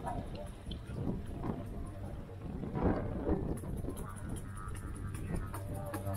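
Didgeridoo playing a low, steady drone, heard faintly under the voices of people nearby.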